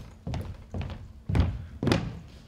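Footsteps thudding on a hollow stage ramp, about two steps a second, the last two the loudest.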